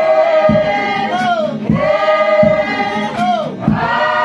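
A choir singing, mostly women's voices, holding long notes in sustained phrases with short breaks between them.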